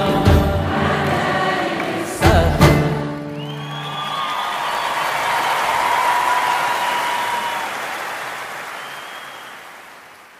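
A choir and ensemble end the closing song on a sung chord cut off by two loud strikes about two and a half seconds in. A large audience's applause and cheering then takes over and fades out.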